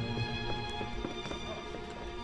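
Opera orchestra holding sustained chords, with irregular light knocks of performers' footsteps on the wooden stage.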